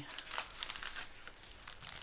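Clear plastic film on a diamond painting canvas crinkling as the canvas is handled and turned over. The crinkles are scattered, mostly in the first half second and again near the end.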